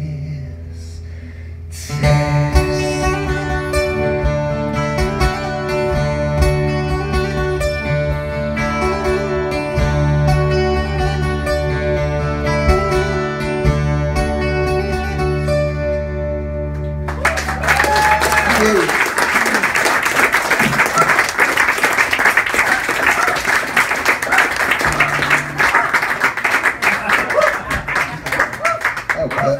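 Acoustic guitars, among them a twelve-string, over a bass guitar play the closing instrumental bars of a song, ending about seventeen seconds in. Audience applause follows and fills the rest.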